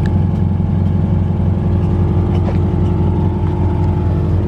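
A 2013 Scion FR-S's flat-four boxer engine running steadily through its DC Sports aftermarket exhaust, a low-pitched drone that stays at an even pitch without revving.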